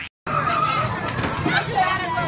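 Many children's voices chattering and shouting at once, a busy play-area din. It starts abruptly about a quarter second in, after a brief silent gap.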